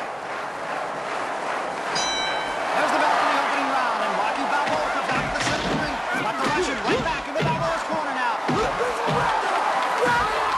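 A boxing ring bell rings once about two seconds in, starting the round. A crowd shouts throughout, and from about five seconds on, heavy punches land with thuds.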